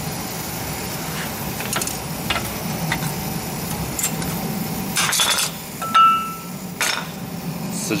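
Scattered metallic clicks and scrapes of a pointed tool working against a brake caliper and its worn-down pads, with a brief high squeak about six seconds in. A steady low hum runs underneath.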